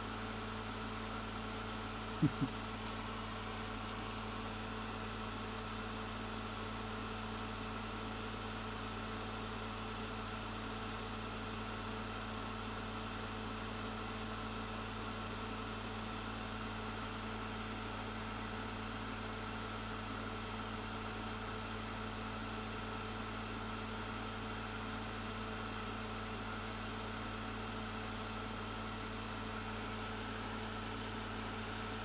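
Steady low machine hum of a small fan or motor on the workbench, with three short clicks about two to three seconds in.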